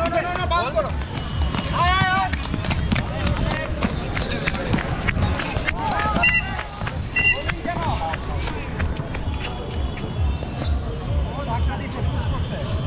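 Inline roller skates' wheels rolling and striding on a concrete court, a steady low rumble with short clicks, while players shout now and then.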